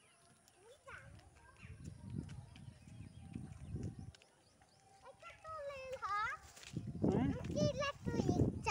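Low rumbling on the phone's microphone for a few seconds. Then several high, wavering, falling voice-like calls in the second half, the loudest near the end.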